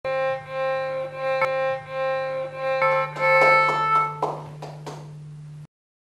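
A violin played by a learner who is no virtuoso: a series of long bowed notes, one after another at changing pitches, over a steady low hum. The playing stops abruptly near the end.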